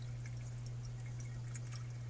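Faint dripping and trickling water as a hang-on-back aquarium overflow box drains down after the pump's power is cut, over a steady low hum.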